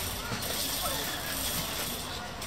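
Indistinct voices of people talking in the background over steady outdoor noise, with no clear sound from the pony.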